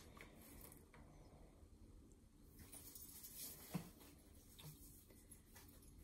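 Near silence: room tone with a few faint, short ticks of small objects being handled.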